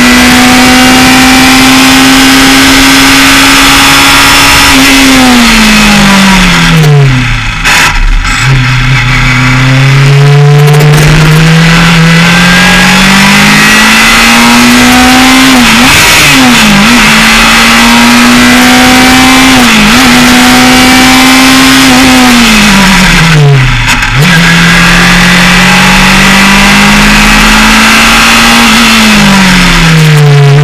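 Formula Estonia 21 single-seater's engine heard onboard at racing speed. It holds high revs, then drops steeply twice as the driver brakes and downshifts. Each time it climbs back up through the gears, with brief dips at the upshifts.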